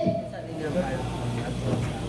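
Low murmur of indistinct chatter from a roomful of people, over a steady low hum, just after a loud called-out cue that ends right at the start.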